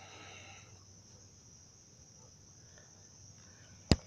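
Faint, steady high chirring of crickets in the background, with one sharp click near the end.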